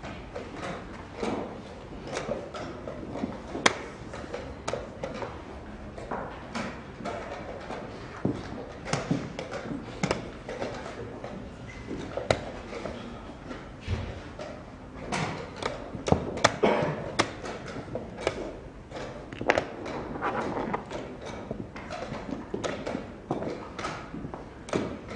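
Chess pieces knocked down on a board and chess clock buttons pressed in quick succession in blitz play: sharp, irregular knocks about one or two a second, a few of them louder.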